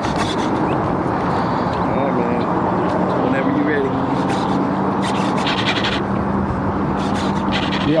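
The electric ducted fan of a Freewing F-18 RC jet runs on the ground with a steady rushing sound. A low steady hum joins in about halfway through.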